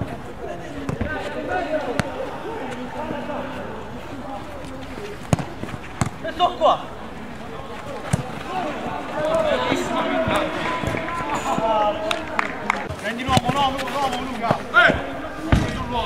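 A football kicked several times on an artificial-turf five-a-side pitch, sharp single thuds, among players' shouts and calls that grow busier in the second half.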